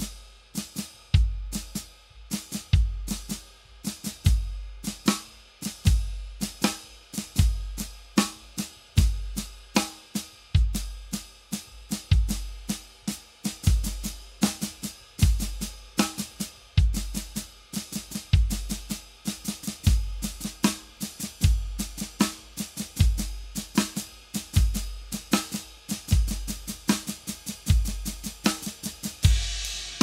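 Drum kit playing a sixteenth-note coordination exercise. The bass drum keeps a steady pulse while the snare, the cymbal and the hi-hat pedal strike together in shifting patterns.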